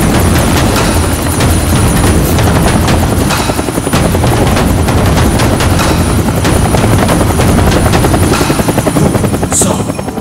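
Helicopter running loud and steady as it comes in to land, its rotor chopping fast over a thin, steady high whine.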